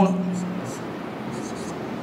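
A marker pen writing on a whiteboard: a few short, faint strokes.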